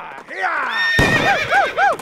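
A horse whinnying, its call falling and then breaking into about five quick quavering pulses, with a sharp crack about halfway through.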